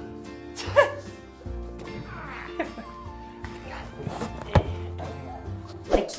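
Background music with held notes over a steady low bass. A short voice-like sound comes about a second in, and a sharp knock about four and a half seconds in.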